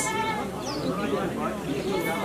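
Goats bleating, with a wavering call near the start.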